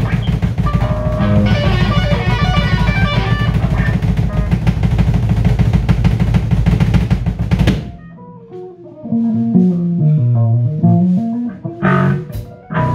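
A rock band of electric guitars, bass and drum kit playing loud together, stopping abruptly about eight seconds in. After the stop, quieter single guitar notes are picked, with a few drum hits near the end.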